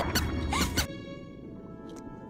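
A few quick swishing cartoon sound effects in the first second, over music that then settles into soft held notes.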